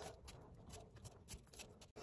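Near silence with a few faint knife taps on a cutting board as scallion is chopped very small.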